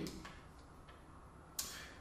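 Quiet room tone in a pause between spoken sentences, with one sharp click near the end.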